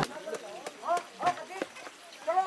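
Indistinct voices of several people talking at a distance, with a few light knocks.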